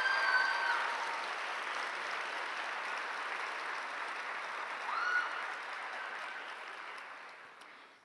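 Audience applauding, with a long high cheer at the start and a shorter one about five seconds in; the applause fades out toward the end.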